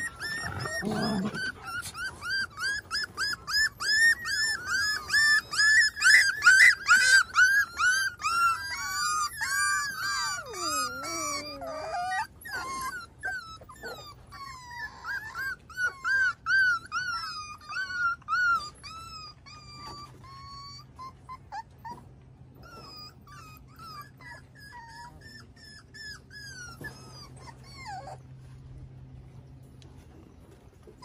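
Miniature schnauzer puppies whining and yipping in a rapid string of high-pitched cries. The cries are loudest in the first ten seconds, with one cry sliding down low, then grow sparser and fade after about twenty seconds.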